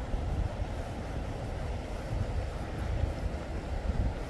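Low, uneven rumble of wind buffeting the microphone over a steady background hum.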